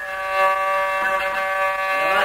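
A single long note held at a steady pitch, rich in overtones, in traditional Arabic 'ataba folk music.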